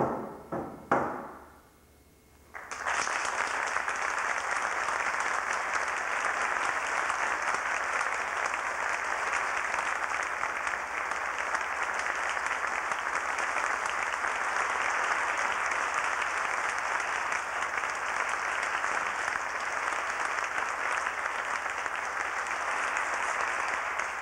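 The last few strokes of a frame hand drum end about a second in. After a short pause, an audience applauds steadily for about twenty seconds.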